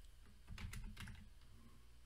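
A few faint keystrokes on a computer keyboard, bunched together about half a second to a second in.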